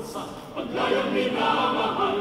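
Choir singing held chords, growing louder about a second in.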